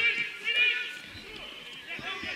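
Men shouting during a football match: two loud, high-pitched calls, one at the start and one about half a second in, then fainter shouts over the open-air noise of the ground.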